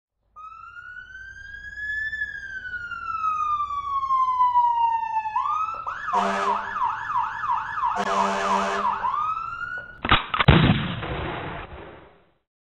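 Siren sound effect: a long wail that rises and then falls slowly, then switches to a fast yelp of about two and a half rises a second. About ten seconds in it ends with a loud sudden hit that dies away over two seconds.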